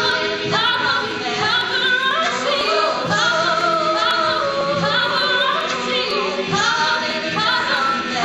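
Mixed-voice a cappella ensemble singing unaccompanied, several voice parts in harmony with notes that slide and change throughout.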